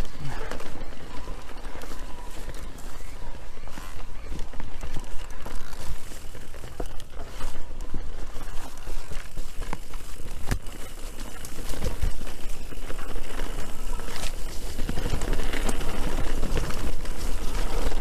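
Electric mountain bike riding fast down a dirt singletrack: a steady rush of wind on the microphone and tyre noise, with sharp clatters and knocks as the bike goes over bumps. It gets louder in the last few seconds as the speed rises.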